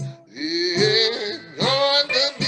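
Blues guitar played solo on a hollow-body archtop electric guitar. The notes glide up into pitch and waver.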